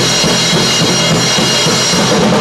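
A rock band playing loudly: a drum kit with kick drum, snare and cymbals under electric guitar and bass guitar.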